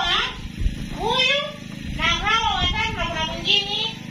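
Speech only: a woman talking into a handheld microphone, amplified over a sound system, in words the transcript did not catch.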